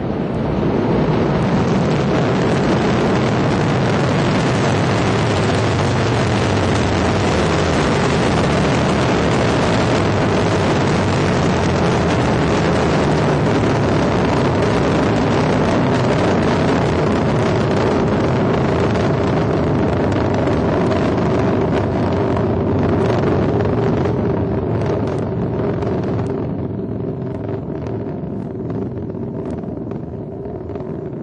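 Ariane 5 ECA rocket in ascent: the steady, loud rumble of its two solid rocket boosters and cryogenic Vulcain main-stage engine burning together. The sound fades and thins over the last several seconds, with sharp crackles.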